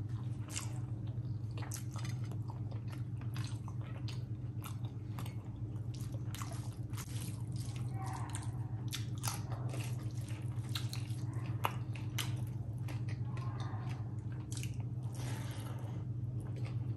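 Close-miked wet chewing and lip-smacking of a mouthful of rice and curry, with fingers squishing and mixing rice and curry on a steel plate, in many short clicks and smacks over a steady low hum.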